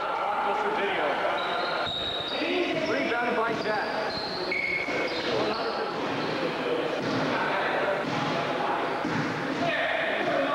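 Basketball being dribbled and bounced on an indoor court during play, with short high sneaker squeaks and players' voices calling in the background.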